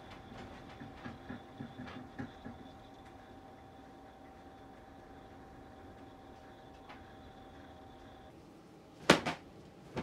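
Light clicks and knocks of clothes being hung on a folding wooden drying rack, over a faint steady whine that stops about eight seconds in, then a sharp double knock about nine seconds in.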